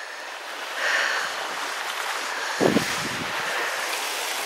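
Sea waves washing onto a rocky shore, a steady rush of noise that swells about a second in. A brief low thump comes about two-thirds of the way through.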